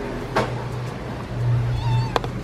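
A domestic cat meowing once, briefly, near the end, after a single sharp click about half a second in.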